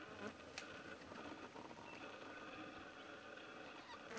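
Faint, steady buzzing of flying insects, with a couple of sharp clicks about half a second in.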